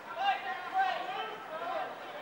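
Indistinct voices of people talking and calling out, with no clear words.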